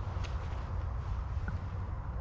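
Low, steady wind rumble on the microphone, with a couple of faint light clicks as twigs of a sycamore branch are handled.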